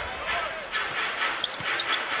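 A basketball bouncing on a hardwood court during live play, over the steady noise of an arena crowd.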